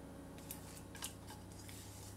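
Two faint sharp clicks, about half a second and a second in, as egg is added to creamed butter in a glass mixing bowl, over a faint low background.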